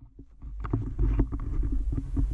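Low rumbling buffet of wind and movement on an action-camera microphone while walking, with a run of quick, light knocks and rustles.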